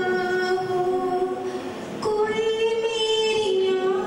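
A woman singing solo into a microphone, holding one long note, then moving up to a higher held note about halfway through.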